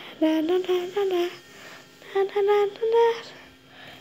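A voice humming a little tune in two short phrases of held, steady notes, with a pause between them.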